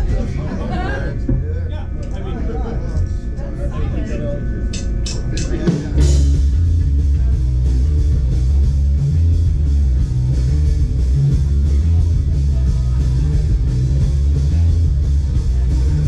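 Live rock band starting a song: about five seconds in, four quick sharp clicks count off, and about six seconds in the full band comes in loud with heavy bass, guitar and drums. Voices over low bass fill the seconds before.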